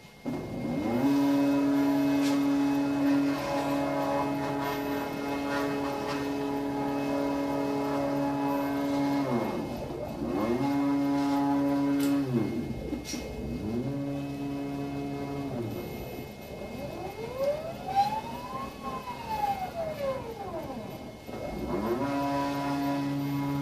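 Stepper motors of a 3D-printed Thor robot arm whining as its joints move. In each move the pitch climbs as the motors speed up, holds steady, then drops as they slow to a stop. There are several moves with short pauses between them, and the last is one smooth rise and fall in pitch.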